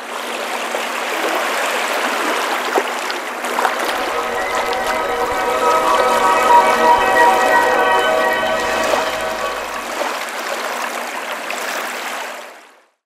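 Waves washing on a shore, a steady rushing wash. A sustained musical chord swells in about four seconds in and fades out near the end.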